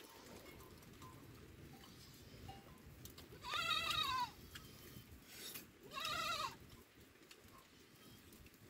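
Two high-pitched sheep bleats, about two seconds apart, each under a second long and rising then falling in pitch.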